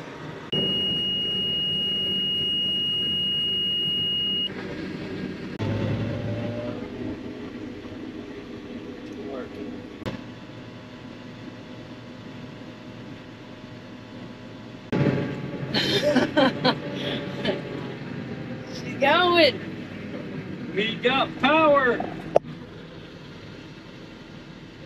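A steady, high-pitched electronic warning tone from the forage harvester's cab sounds for about four seconds near the start and cuts off, with a low machine hum underneath. Later, from about fifteen seconds in, unclear voices come in and are the loudest thing.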